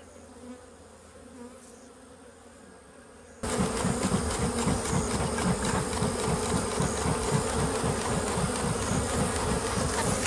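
Honey bees buzzing around an open hive box as they are smoked. The sound is faint at first, then about three and a half seconds in it turns suddenly much louder and stays steady, with a quick pulsing.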